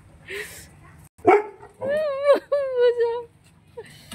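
Dog vocalising: a sharp bark about a second in, then two drawn-out, high-pitched cries with a wavering pitch.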